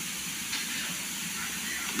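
Steady hiss of background noise and room tone between spoken sentences, with no other distinct sound.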